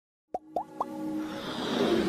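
Logo-intro sound effects: three quick pops rising in pitch, about a quarter second apart, then a swelling whoosh that builds with music.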